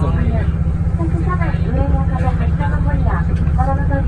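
Diesel railcar running along the line, a loud steady low rumble of engine and wheels heard from on board, with people talking over it throughout.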